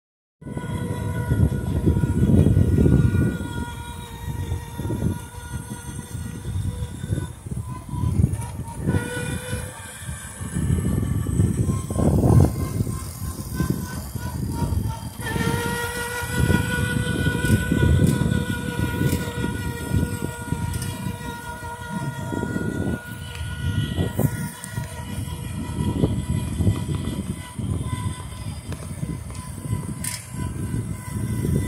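Small electric ride-on quad's motor giving a steady whine while it drives along, fading and picking up again as the throttle is eased and pressed. Under it runs a rough rumble from the hard wheels on the asphalt.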